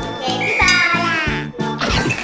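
Children's background music with a steady beat, overlaid from about half a second in by a quacking cartoon sound effect that bends down in pitch at its end, then a short whooshing poof effect near the end.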